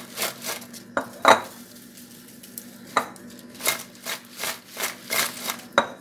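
Crisp fried pork crackling pieces tossed in a glass bowl, clattering against the glass in a series of short knocks and clicks, the sharpest a little over a second in and again at about three seconds.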